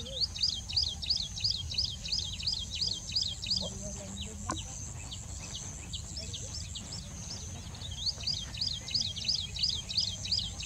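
Rufous-fronted prinia singing: a fast run of repeated high, arching notes, about three or four a second, for the first few seconds, then a scattering of single notes, and a second run from about eight seconds in.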